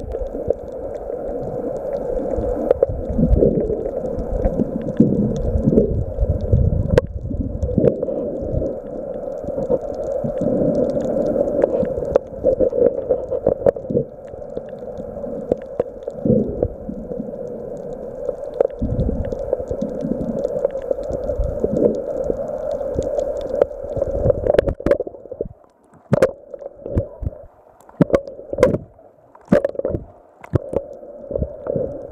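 Muffled underwater sound of water moving around a submerged camera: steady churning and gurgling with a constant low hum. In the last few seconds it turns to sharp clicks and splashes as the camera breaks the surface.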